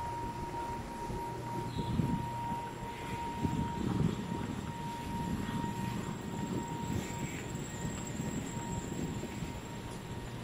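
Low rumble of a motor vehicle passing close by, swelling about two seconds in and again around four seconds, over a thin steady high-pitched hum.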